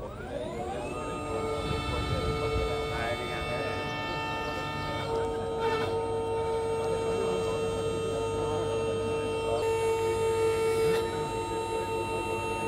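Electric drive motor of a Malwa electric forwarder-harvester whining as it spins up. The pitch rises over about the first second, then holds a steady tone as the machine moves, with a change in the tone about halfway through.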